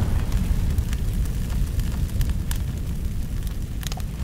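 Flames as a sound effect: a steady deep rumble with scattered sharp crackles and pops.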